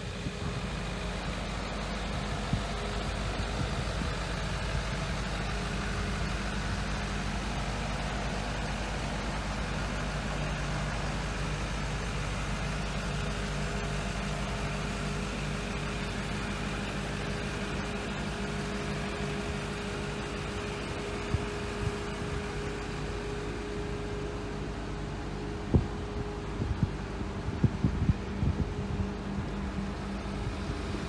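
Ford 6.7-litre Power Stroke turbodiesel V8 idling steadily, with a faint steady whine over the low idle. A few light clicks near the end.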